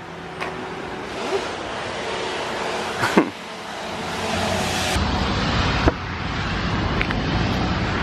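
Steady outdoor rushing noise with a few faint clicks and taps scattered through it.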